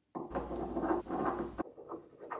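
Metal and seal parts of an antique Alemite hand-pump grease gun grating and scraping as the upper assembly is pushed down into its nickel-plated barrel. The grating lasts about a second and a half, then stops abruptly, and a few short scrapes follow.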